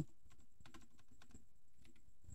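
Faint computer keyboard keystrokes, a few irregular taps while typing code.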